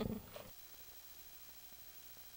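A brief rough burst in the first half second, then faint steady hiss and low hum from a blank stretch of videotape.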